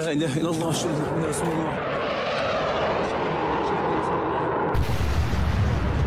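Amateur phone-camera war footage: a voice at first, then, nearly five seconds in, a sudden deep rumble of a large explosion that carries on, heard through a phone's microphone.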